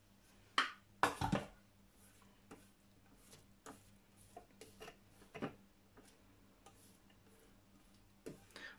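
Thermomix TM6 handled after chopping: a couple of sharp knocks in the first second and a half as the lid comes off, then light, scattered scrapes and taps of a silicone spatula against the stainless-steel mixing bowl as chopped onion is pushed down from the sides.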